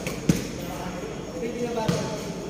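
A basketball bouncing on a concrete court, two separate thuds, one near the start and one near the end, with indistinct voices behind.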